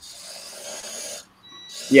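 Small motors and servos of a radio-controlled 3D-printed droid whirring as it is driven. A rasping run of about a second stops suddenly, and after a brief pause a fainter, thin high whine starts.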